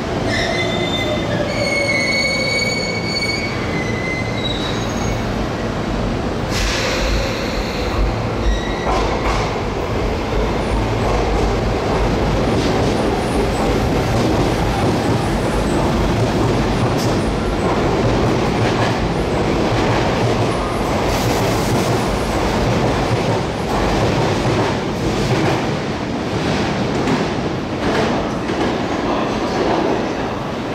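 A Sotetsu electric commuter train running slowly along the platform track close by, with a steady rail rumble and clatter. In the first few seconds there is a high squeal and a falling whine.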